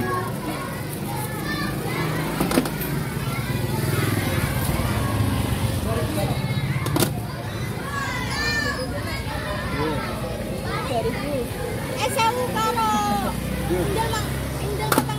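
Crowd of schoolchildren talking and shouting at play, with high voices overlapping throughout. A few sharp knocks stand out over them, and a steady low hum runs underneath.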